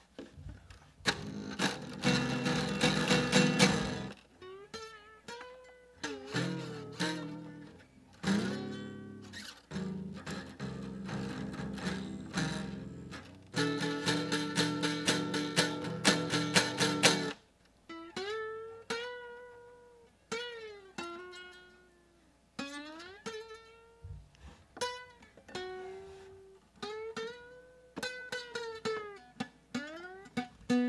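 Nylon-string classical guitar with a busted bridge, strummed in ragged chords through the first half, then played as single plucked notes that slide up and down in pitch. Its broken bridge leaves the top strings untunable, so only the bottom string sounds properly.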